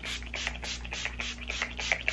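A small hand-pump spray bottle spritzed over and over: a quick run of short hissing sprays, about four a second.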